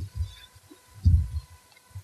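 Low, dull thumps picked up by the table microphone, the kind made by bumps or handling near the mic: a short one at the start, a louder cluster about a second in, and a brief one near the end.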